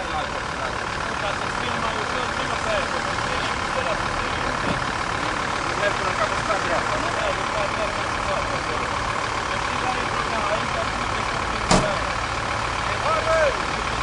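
A vehicle engine idling, a steady running noise, with faint voices in the background and one sharp click about twelve seconds in.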